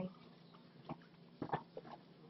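A short, faint call from a domestic cat about one and a half seconds in, after a soft click, in an otherwise quiet room.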